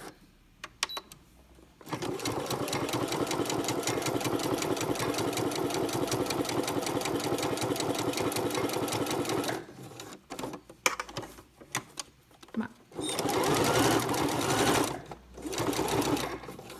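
Domestic electric sewing machine sewing a straight-stitch seam through layered fabric: a fast, even stitching rhythm for about seven seconds, a stop with a few clicks, then a second short run near the end.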